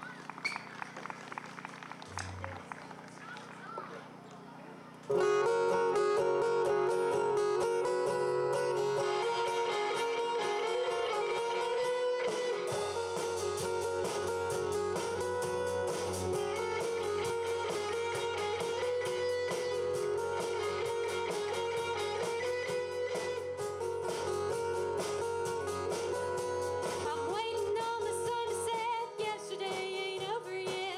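Live country-rock band starting a song. After a few seconds of quiet guitar noodling, the guitars come in loudly about five seconds in with a melody line. Bass and drums join about thirteen seconds in, and the band plays on steadily as an instrumental intro.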